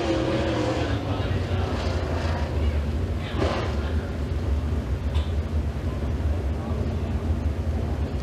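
Dirt Super Late Model race car engine at high revs, its steady note fading out in the first second as the car runs away down the track. A low engine rumble carries on after it, with a brief swell about three seconds in.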